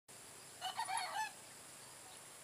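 A rooster crowing once, a short crow of several joined parts starting about half a second in.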